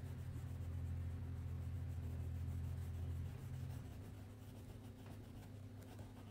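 A crayon rubbing back and forth on paper in repeated coloring strokes. A low steady hum sits under it and drops away about three and a half seconds in.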